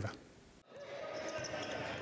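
Brief near silence, then the faint ambient sound of an indoor basketball game: hall noise with a ball bouncing on the court.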